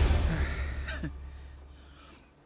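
A young man's gasp a little under a second in, falling in pitch, as a loud film-score swell and a low rumble die away.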